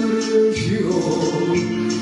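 A man singing a bolero into a handheld microphone over a karaoke backing track, holding long notes with a change of pitch about half a second in.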